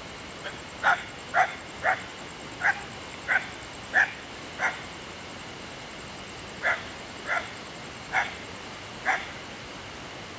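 A dog barking in short single barks, about a dozen of them, with a pause of about two seconds in the middle. A steady high-pitched whine runs underneath.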